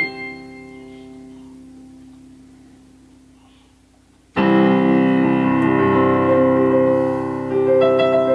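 Digital piano in a piano voice being played: a held chord fades away slowly, then a loud full chord comes in suddenly about four seconds in, and further sustained chords follow, with new notes entering near the end.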